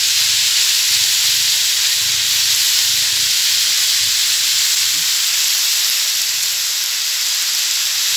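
Marinated pork sizzling steadily as it stir-fries in a large aluminium wok, a continuous hiss.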